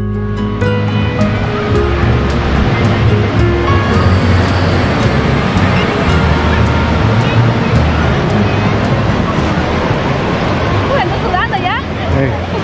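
Background music with plucked-string notes fades out over the first few seconds. Beach ambience takes over: steady surf breaking with a babble of bathers' voices, and a few higher voices call out near the end.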